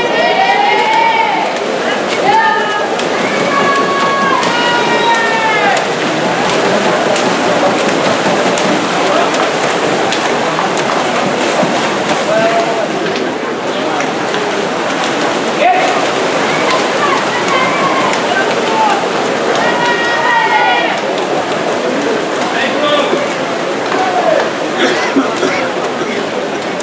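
A crowd in a swimming pool hall shouting and cheering on swimmers: a steady loud din, with drawn-out shouts rising above it in the first six seconds and again around twenty seconds in.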